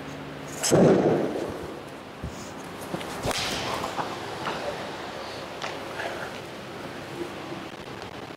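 Golf iron striking a ball off a hitting mat about three seconds in: a sharp crack with a short hiss after it, then a few fainter knocks. A brief louder sound about a second in comes before the strike.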